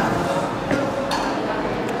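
Indistinct voices over steady room noise.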